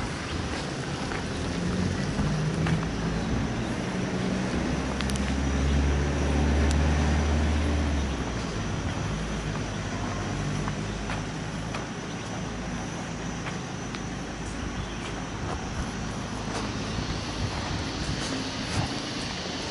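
Outdoor ambience with a motor vehicle's engine running, swelling to its loudest a few seconds in and then fading. A faint steady high tone runs underneath.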